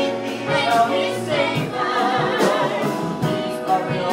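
A small vocal ensemble singing a musical-theatre song together in harmony, accompanied by piano, cello and drums.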